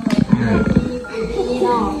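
Several people's voices together: a low, rough, drawn-out vocal sound in the first second, then talk.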